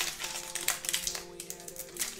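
Foil trading-card pack wrapper crinkling and crackling as it is pulled open by hand, busiest in the first second, with faint held musical tones underneath.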